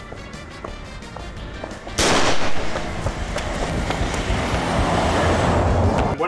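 Background music, then about two seconds in a sudden loud rush of a car speeding past close by, its low rumble building toward the end.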